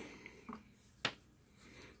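Quiet room with one short, sharp click about a second in and a fainter brief sound just before it.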